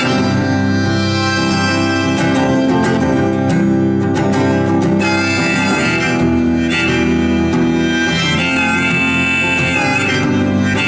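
Harmonica played from a neck rack over a strummed acoustic guitar, an instrumental folk passage with held, wailing harmonica notes.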